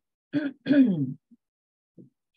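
A person clearing their throat: a short two-part 'ahem' about half a second in.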